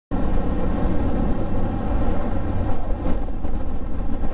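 Triumph Speed Triple 1050's three-cylinder engine with Arrow exhaust, running at a steady cruising speed. Its steady note sits over low wind rush on the microphone.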